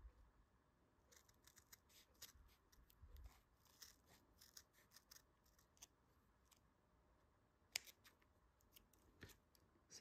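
Steel scissors cutting through felt: a faint, irregular series of short snips as a felt backing is trimmed close along an edge.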